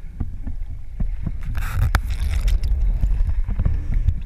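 Water moving around an underwater camera: a steady low rumble with scattered clicks and a short hiss about one and a half seconds in.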